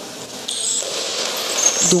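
Bells inside a goalball jingling as the ball is thrown and rolls along the court floor, starting about half a second in and growing louder.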